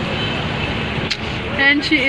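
Steady outdoor background rumble with a click about a second in, then a woman's brief high-pitched exclamation near the end.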